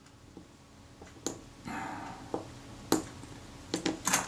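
A few faint, sharp clicks from the Retina IIa camera's small metal focus-mount parts as they are handled by hand, with a soft rub between them. The mount is being worked to free it, but it is still held by one screw and gummy old grease.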